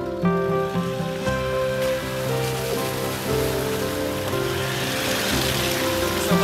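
Background music with steady held notes over the splashing of an off-road vehicle's tyres through a shallow stream ford. The splashing grows louder over the last few seconds.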